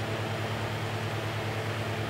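Orion TeleTrack alt/az mount's motors turning the camera under computer control: a steady low hum with a faint regular pulse and a light hiss.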